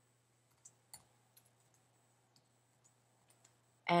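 Faint computer keyboard keystrokes: about nine scattered, sharp clicks as a line of code is typed.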